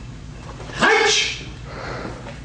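A man's short, sharp vocal shout about a second in, lasting about half a second.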